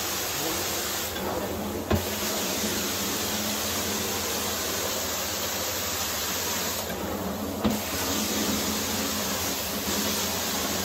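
Carpet-cleaning extraction wand spraying and sucking water through the carpet pile, with a steady hiss of spray and suction over a low hum. Twice, about two seconds in and again near eight seconds, the hiss thins for under a second and ends in a short sharp knock as the stroke changes.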